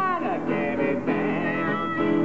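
Harmonica and acoustic guitar playing together, with a note bent sharply down in pitch right at the start.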